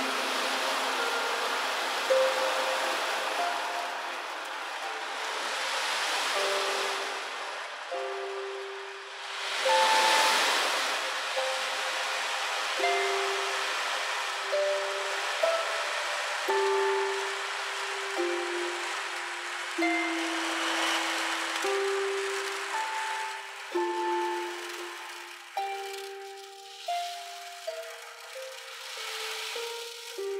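Slow single notes plucked on a harp, each ringing on, over the hissing wash of an ocean drum. The drum's beads roll across the head in swells that rise and fade every few seconds, loudest about ten seconds in.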